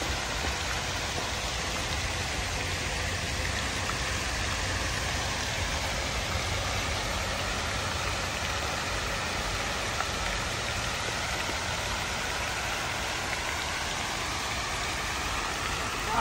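Outdoor pond fountains: several water jets falling back into the pool with a steady, unbroken splashing rush.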